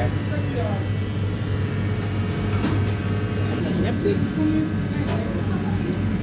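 Steady low hum of commercial kitchen equipment, with faint voices in the background and a few light clicks.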